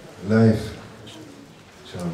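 A man's voice: one drawn-out, low spoken syllable about a quarter of a second in, lasting about half a second, then a pause in the slow speech, with another syllable starting right at the end.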